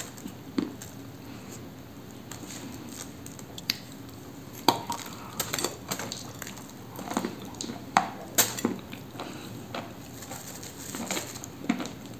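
Sharp crunches and crackles of a dry baked chunk of Cambrian clay being bitten and chewed close to the microphone, sparse at first and coming thick and fast from about five seconds in, the loudest near five and eight seconds.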